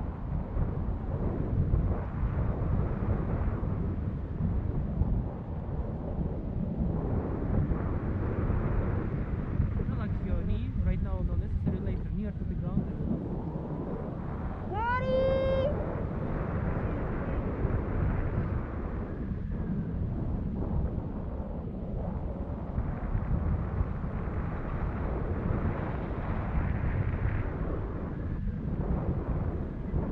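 Wind noise buffeting the camera microphone during a paragliding flight, a steady low rumble throughout. About halfway through, a person's voice gives a single brief rising cry.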